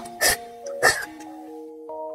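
Wide noodles slurped up through the lips in two loud, sharp slurps within the first second, over light background music of held melodic notes that continues alone afterwards.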